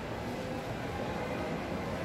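Steady background noise of a shopping-mall food court: an even low hum of room ambience with no distinct events.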